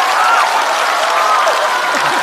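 Studio audience applauding, steady and loud, with a few voices rising over the clapping.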